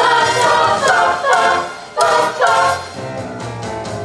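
Young women's choir singing a jazz song in several voice parts. The phrase breaks off about halfway through, and the singing is quieter near the end. Low bass notes are held underneath.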